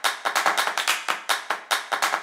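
A fast run of sharp clicks or taps, about seven a second.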